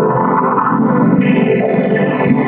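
Logo jingle music run through distortion and chorus effects, dense and loud.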